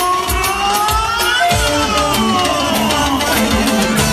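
Live band music: an electronic keyboard plays a lead line that slides up and then down in pitch, over a steady drum-machine beat.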